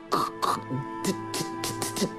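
A woman imitating a stutter, hissing and spitting out a string of short, repeated 's' and 't' sounds. Background music with steady held tones plays underneath.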